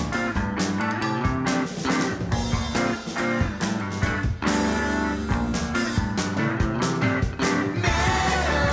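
Instrumental passage of an indie rock song: electric guitar and bass over a steady drum beat, with no vocals.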